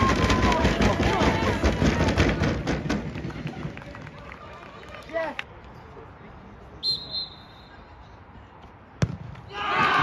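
Football spectators shouting and cheering, dying away after about three seconds to quiet. A referee's whistle blows once, briefly, about seven seconds in; near the end a ball is struck with a sharp thud, and a crowd cheer rises straight after.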